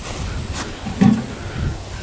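A metal rural mailbox being handled to open it: a sharp click about half a second in, then a short low thump about a second in.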